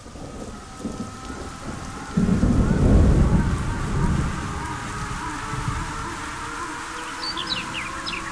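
Rain with a loud rolling thunder rumble starting about two seconds in, over faint held musical tones; a few short high chirps come near the end.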